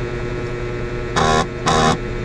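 A steady electrical hum, broken about a second in by two short, evenly pitched sounds of about a third of a second each, close together.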